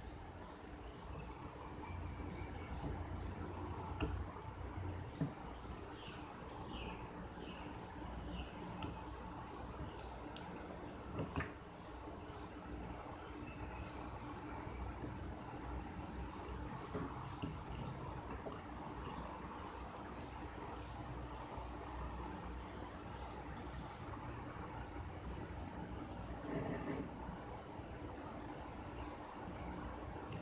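Faint steady high-pitched tone over a low hum, with a few soft clicks and rustles as jumper wires are pushed onto an Arduino board's header pins.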